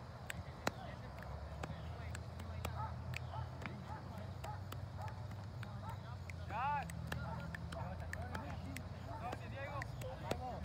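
Distant shouts and calls of soccer players across the field, with one louder call just before seven seconds in. Underneath runs a low steady rumble, and a few sharp clicks or knocks sound now and then.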